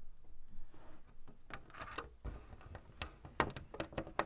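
Lego brick separator prying small round plastic pieces off the studs of a Lego Art mosaic: scattered faint plastic clicks and scrapes, with a quick run of sharper clicks in the second half.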